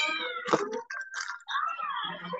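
A cat meowing, with a long rising-and-falling meow near the end, picked up over a video-call microphone.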